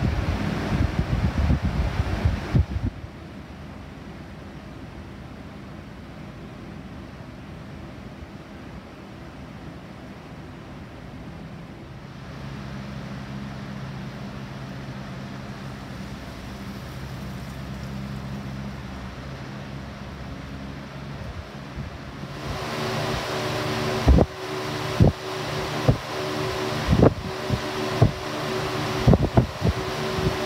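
Window-mounted Lasko box fans running with a steady whir and motor hum, their airflow buffeting the microphone for the first couple of seconds. About 22 seconds in, a louder fan takes over, with irregular gusty thumps of air on the microphone.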